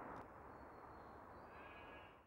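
Near silence: faint steady background noise with a faint, thin, high tone.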